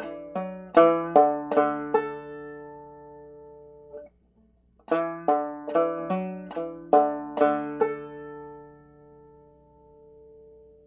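Five-string banjo played clawhammer style: a short phrase of plucked melody notes and brush strums, with a pull-off followed by a hammer-on and another pull-off, ending on a note left to ring. After a short pause about four seconds in, the same phrase is played again and left to ring out.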